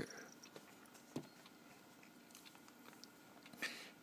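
Near silence: room tone after the rhythmic tapping on the tablet screen stops, with a single soft click about a second in and a short breath near the end.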